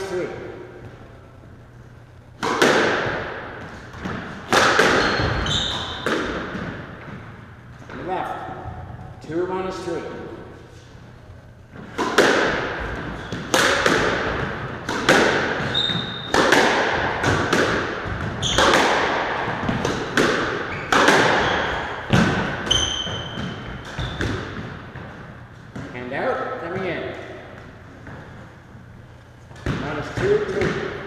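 Squash rally in an enclosed court: the rubber ball is struck by the racquets and smacks off the walls, roughly once every second or second and a half, each hit echoing. Short high squeaks from shoes on the hardwood floor come between some of the hits. The rally stops a few seconds before the end.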